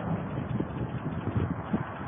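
Wind buffeting the microphone, with a few faint, irregular thuds and crackles from a tall steel industrial tower being demolished as it tips over.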